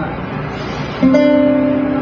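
A single guitar note plucked about a second in and left to ring steadily, after a quieter second of fading string sound.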